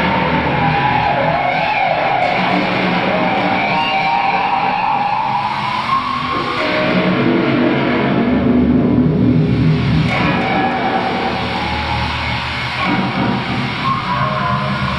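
Rock music led by an electric guitar, its lead line bending and sliding in pitch over a steady band.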